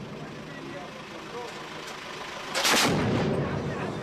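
Truck-mounted twin-barrel 23 mm cannon (ZU-23-2) firing one short burst about two and a half seconds in, its echo rolling away afterwards.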